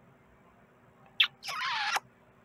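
A woman's high-pitched, squeaky non-word vocal sound: a brief chirp a little after a second in, then a longer bending squeak of about half a second near the end.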